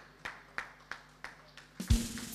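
Slow, sparse hand clapping from one or a few people, about three even claps a second. A single low thump comes near the end.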